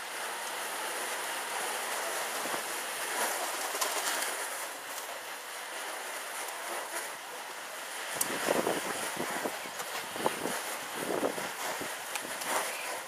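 Steady wind rushing over the microphone, with a run of irregular flapping bursts from about two-thirds of the way in as diving pigeons beat their wings close by.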